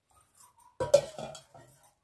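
Metal mixing bowl set down with a sharp clank about a second in, followed by a few lighter knocks and clinks.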